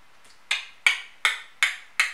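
Five sharp, short clicks in an even rhythm, a little under three a second, starting about half a second in.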